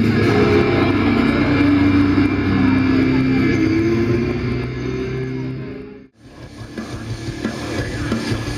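Live heavy metal band playing loud through the stage PA, with sustained guitar chords. The sound fades out about six seconds in, then fades back up as the next song begins.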